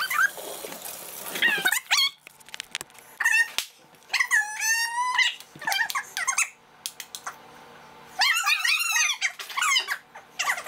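A run of short, high-pitched squeals that waver up and down in pitch. The longest lasts about a second, about four seconds in, and several more come close together near the end.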